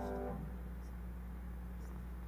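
The last sung note with guitar accompaniment fades out within the first half second. It leaves a steady low hum in an otherwise quiet church.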